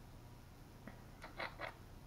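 Quiet room tone with a few faint, short clicks or rustles bunched about a second and a half in.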